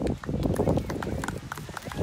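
Chatter of a crowd over irregular thuds and rustling close to the microphone.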